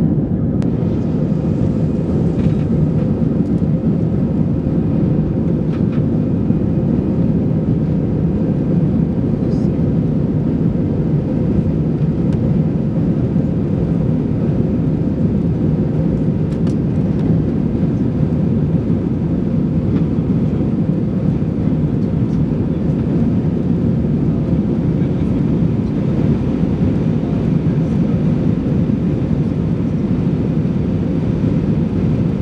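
Steady cabin noise of an Airbus A320 climbing after takeoff: an even, deep rumble of engines and airflow heard inside the cabin.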